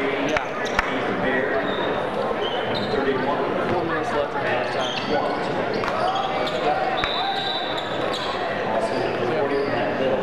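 Game sound of basketball in a large gym: a steady mix of voices from the crowd and players, a basketball bouncing on the hardwood floor, and short high squeaks of sneakers, all echoing in the hall.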